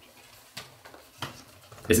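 A few faint clicks and rustles from a CD case and its paper booklet being handled.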